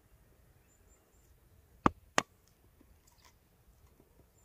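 Two sharp clicks about a third of a second apart, a little before the middle: a knife blade snapping small chips off the end of a heather stick as it is carved. A few much fainter ticks follow.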